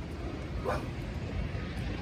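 A goldendoodle gives one short, rising vocal sound under a second in, over steady low background noise.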